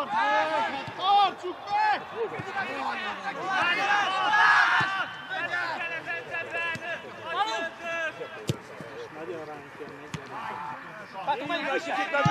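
Footballers shouting and calling to each other across the pitch. A single sharp thud of a football being kicked comes a little past the middle.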